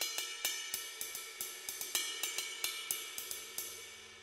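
Sabian Anthology ride cymbal struck with the shoulder of a drumstick, going back and forth between the bell and the body at about four strokes a second, with a bright ringing bell tone. The strokes stop near the end and the cymbal rings out.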